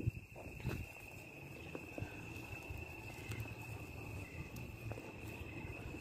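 Night insects trilling in one steady high unbroken tone, with a few faint clicks.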